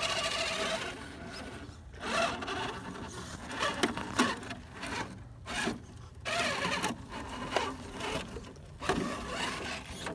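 Electric drive motor and gearbox of a Redcat Gen8 RC rock crawler whirring in short stop-start throttle bursts, its tires scrabbling and rubbing on granite as the truck crawls through a rock crevice.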